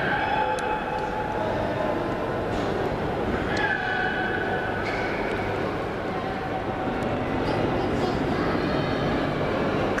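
Steady background noise of a large indoor exhibition hall, a constant wash with a low hum, faint voices and a few short held tones.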